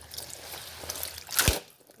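Water trickling and dripping from wet clothes in a plastic washing tub as they are rinsed and left to drain. One short, loud thump comes about one and a half seconds in.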